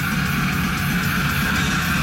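Loud guitar rock music played back through a loudspeaker, running steadily with an even beat.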